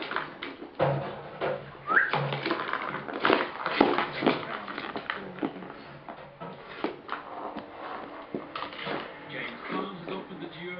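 Plastic ball-track cat toy rattling and clacking as a kitten bats at it: an irregular run of quick knocks, with a short rising squeak about two seconds in.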